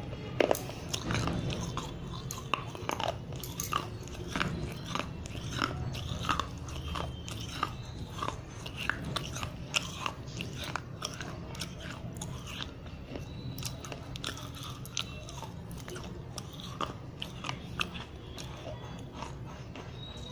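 Close-miked chewing of dry baked-clay diya pieces coated in white chalk paste: many sharp, gritty crunches throughout, over a steady low hum.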